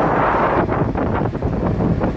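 Wind buffeting the microphone aboard an outrigger boat under way, loud and gusty, over the boat's steady low running rumble.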